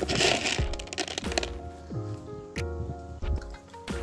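Background music with held notes that change every half-second or so. A short rustling burst comes at the very start, and several sharp clicks and knocks come through the rest.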